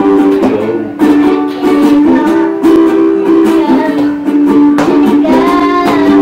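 Ukulele strummed in a steady rhythm, about two strums a second, sounding ringing chords.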